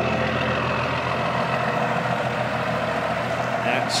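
Diesel truck engine idling steadily: the 1978 Chevy K60's 12-valve Cummins inline-six.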